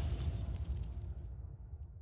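Fading tail of a cinematic logo-reveal sound effect: a low rumble with a hiss on top, the hiss dying out a little past halfway and the rumble fading away near the end.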